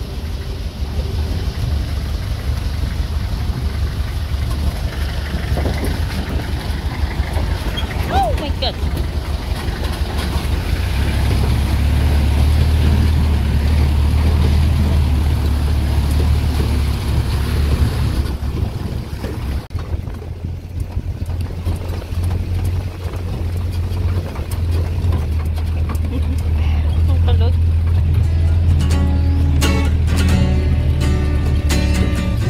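Steady low engine rumble of a 4x4 vehicle driving across a shallow, rocky river, heard from inside its open cabin, with music playing underneath and becoming clearer near the end.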